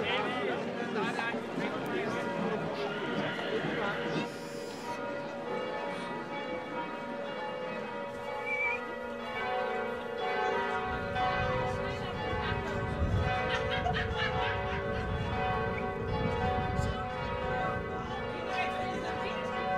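Church bells ringing, several bells sounding together in long, sustained tones, with crowd voices in the first few seconds and a low rumble joining about eleven seconds in.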